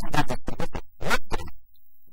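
A man's voice speaking in short choppy phrases, cut by brief gaps, with a short lull near the end.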